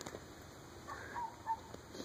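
Quiet outdoor background with a few faint, short bird chirps, about a second and a second and a half in.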